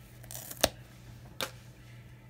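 Two sharp clicks about three quarters of a second apart, with faint paper rustling, as card stock and craft supplies are handled on a desk.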